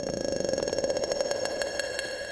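Trailer end-card sound design: a sustained synthesized drone of several held tones with a rapid, even pulsing, slowly fading near the end.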